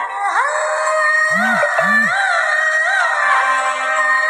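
Telugu film song in an instrumental passage: a sustained melody line with gliding, wavering notes, and two deep pitched drum hits about half a second apart around a second and a half in.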